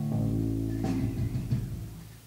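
Amplified electric guitar notes ringing on over a low sustained bass note, with a couple of fresh picked notes partway through, then fading out near the end.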